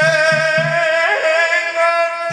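Solo male voice singing one long, held, ornamented note in dikir barat style, with three low drum strokes in the first second.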